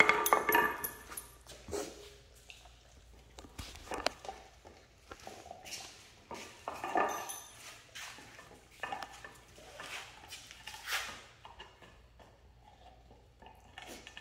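A dog gnawing a long chew bone on a concrete floor: irregular knocks, clacks and scrapes as the bone shifts and hits the concrete between bites, thinning out near the end.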